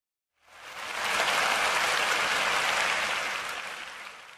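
Audience applauding: a dense, even clapping that fades in about half a second in, holds steady, and begins to fade near the end.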